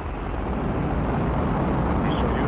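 Soyuz-FG rocket's first stage, four strap-on boosters and the core engine, firing during the climb just after liftoff: a steady, deep rumble that grows a little louder in the first half second.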